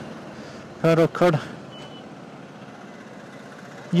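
Steady road-traffic noise from vehicles passing on a bridge road, with one brief high beep about two seconds in.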